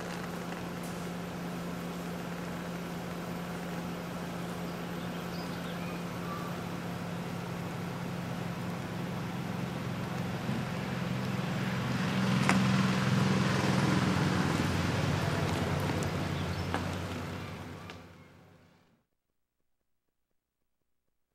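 A motor vehicle's engine running with a steady low hum, swelling louder a little past halfway, then fading out near the end.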